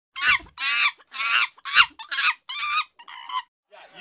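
A series of about seven short, high-pitched calls, roughly two a second, each wavering in pitch, with dead silence between them: a squawking sound effect played over an animated intro card.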